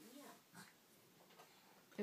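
Near silence, with a faint, short vocal sound from a baby trailing off at the start and a small soft vocal noise about half a second in.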